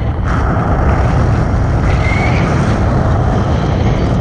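Wind rushing over a camera microphone held out in the airflow of a tandem paraglider in flight: a loud, steady rumble.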